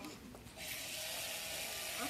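Blue-Bot floor robot's small drive motors whirring steadily as it rolls forward across the floor, starting about half a second in.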